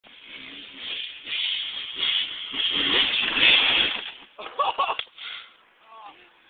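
Kawasaki KX250 dirt bike engine revving hard as the bike runs up to jump, getting louder for about three seconds and then dropping away near four seconds. It is followed by a short burst of clattering knocks as the bike comes down on the car.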